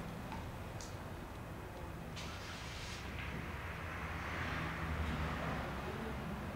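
Quiet, steady room tone: a low hum with a faint rush of air, as from a running projector's cooling fan.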